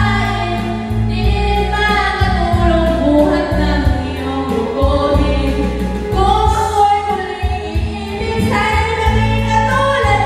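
A woman singing a ballad into a microphone, her voice amplified over backing music with a steady bass line and beat.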